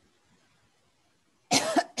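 A person coughing twice in quick succession, starting about a second and a half in.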